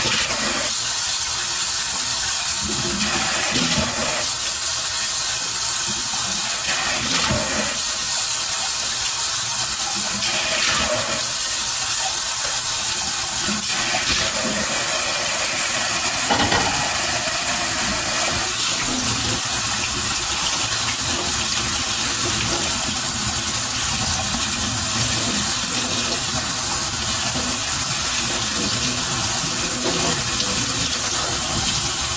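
A tap running steadily into a sink, with a few light knocks, as just-boiled noodles are drained and rinsed.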